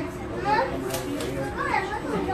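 Voices chattering, including children's higher-pitched voices, over a steady low hum.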